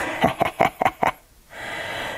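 A woman's short, breathy laugh: a quick run of pulses lasting under a second, then a brief pause and a soft breath out.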